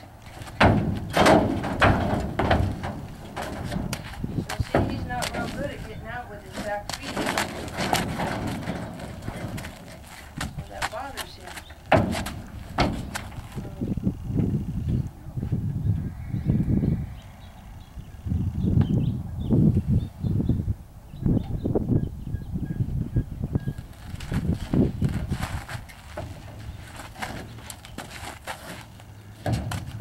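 A Percheron draft horse's hooves thudding and knocking irregularly on the trailer floor as it shifts, backs out and steps back in, with a cluster of loud knocks near the start and more around the middle and near the end.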